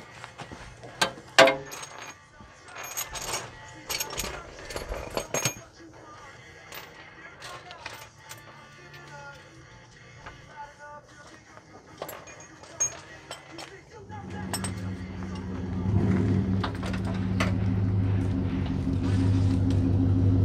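Metal wrench clinks and knocks against the engine's front pulleys and brackets, sharp and irregular over the first several seconds. From about two-thirds of the way through, a vehicle engine running comes in and grows louder.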